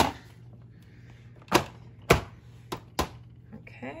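Hard plastic clacks as a toy sink's plastic basin is pressed and snapped down into its water-filled base: about five sharp knocks, the loudest around two seconds in.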